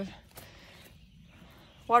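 A pause in a woman's talk with only faint outdoor background, broken by one faint soft tap about half a second in; her voice comes back right at the end.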